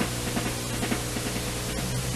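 Marching drum music with a quick beat of about four or five strokes a second, under heavy hiss and a steady low hum from an old film soundtrack.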